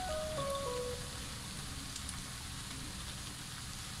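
A few soft held music notes stepping down in pitch in the first second, over the faint steady sizzle of empanada filling cooking in a frying pan.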